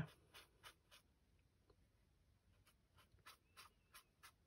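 Faint, short strokes of a watercolour brush on rough watercolour paper: about four in the first second, a pause, then four or five more in the last second and a half.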